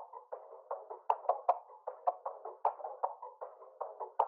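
A trap beat's background percussion loop played on its own: quick light hits, several a second, with a thin, narrow sound lacking lows and highs. It is processed through a vinyl-emulation plugin on its 1960s preset and EQ.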